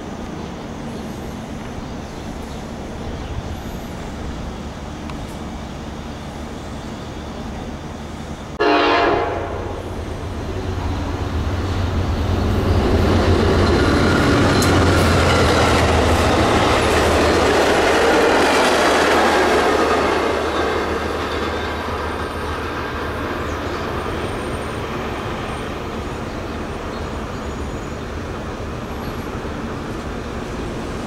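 A passenger train gives one short horn blast about nine seconds in, then passes at speed. Its rumble and wheel-on-rail noise swell, stay loud for several seconds and fade away as it recedes.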